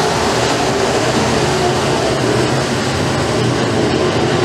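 Several Pro Mod dirt-track race cars' engines running hard together as the pack races through a turn. It is a loud, steady drone, with several engine notes wavering slightly in pitch.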